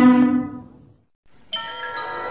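A held musical chord from a television station ident fades out within the first second. After a brief silence, a new bell-like chime chord starts about one and a half seconds in, opening the next ident's music.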